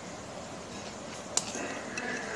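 A metal spoon clinks once, sharply, against a ceramic bowl a little past the middle, over a steady low background noise.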